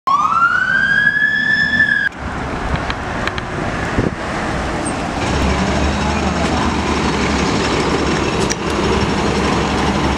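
Fire-rescue truck's siren wailing upward in pitch for about two seconds, then cut off abruptly. After it comes steady vehicle rumble and street noise, with a few clicks.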